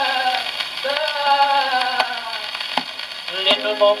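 Orchestral music from a 1929 78 rpm shellac record played acoustically on an HMV 102 wind-up gramophone, with a few sliding notes in the first half and a click or two from the record surface. The tenor voice comes in near the end.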